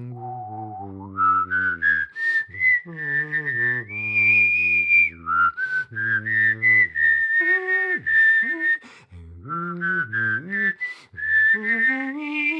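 A person whistling a melody while voicing a low note at the same time, so that whistle and voice sound together as two parts. The melody moves in short phrases with brief breaks between them.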